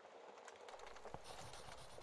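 Faint crackling of a wood fire in a fireplace: irregular small pops and snaps over a soft hiss. A low rumble joins a little way in.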